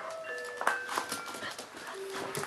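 St Bernard puppies playing, with scattered knocks and scrabbling sounds. A simple chime-like melody of held high notes plays over them.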